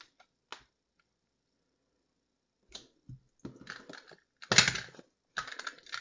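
Tape-runner adhesive dispenser rolled across cardstock in several short scratchy strokes, starting about three seconds in; the loudest comes near the five-second mark. A couple of light clicks of paper being handled come in the first second.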